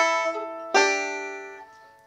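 Five-string banjo, capoed at the second fret, plucked twice about three-quarters of a second apart, each note ringing out and fading. These are single notes on the second string, played to show the two left-hand positions used in the tune.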